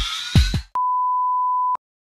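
An electronic dance track with heavy kick drums and a rising synth sweep cuts off abruptly. It is followed by a single steady, high-pitched beep tone lasting about a second, which also stops dead.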